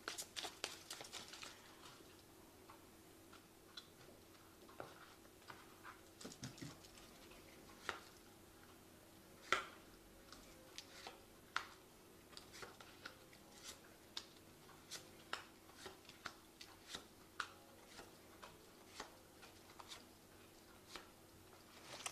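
Faint, scattered soft clicks and taps of a tarot deck being shuffled and handled, a dozen or more irregular strokes over a faint steady hum.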